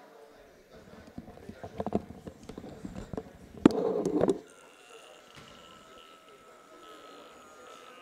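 Gymnasium sounds during a basketball timeout: indistinct voices and a run of knocks and thumps on the hard floor, loudest a little past halfway with a sharp knock and a burst of voices. This is followed by a quiet stretch with only a faint steady tone in the gym.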